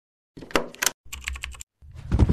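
A quick run of sharp clicks like computer keys being typed, in two short bursts, from an animated logo's sound effect. A deeper, louder sound begins just before the end.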